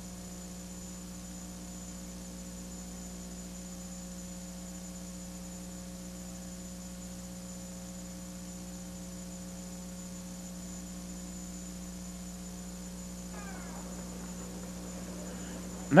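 Steady electrical hum on the sound track of an old video recording: a constant low drone with several fainter overtones and a thin high whine, unchanging throughout.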